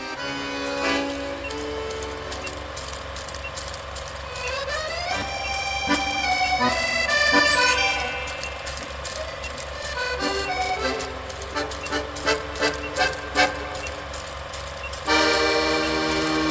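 Background music: sustained chords over a steady pulsing beat, with rising pitch sweeps building to a peak about eight seconds in. A louder section comes in near the end.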